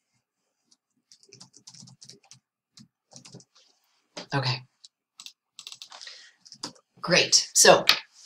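Light, scattered taps of a computer keyboard being typed on, with a short spoken sound about halfway through and speech starting near the end.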